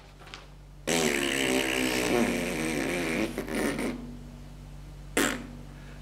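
A long rasping, wavering buzz lasting about two and a half seconds, then tailing off. A short sharp burst of noise comes near the end.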